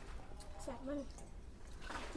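Faint voices of people talking in the background, with a few faint clicks.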